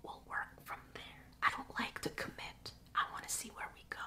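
A woman whispering a few short phrases.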